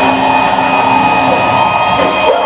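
Rock band playing live through a PA, the electric guitars holding a steady ringing chord with no clear drum hits.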